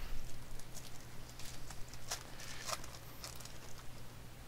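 Scattered light clicks and taps from trading cards and packs being handled, with a steady low hum underneath.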